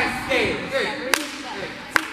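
Two sharp smacks about a second apart, heard over girls' voices calling out in a large practice gym.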